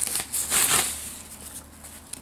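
Plastic bag and foam packing sheet rustling and crinkling as a device is unwrapped: two rustles in the first second, then quieter handling.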